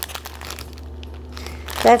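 Plastic bags of diamond painting drills crinkling as hands sort through them inside a larger plastic bag, in scattered small crackles with a short lull in the middle.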